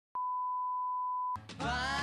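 A steady 1 kHz test-tone beep, the kind that goes with colour bars, held for a little over a second and cut off sharply. Just after, a song starts with a voice singing.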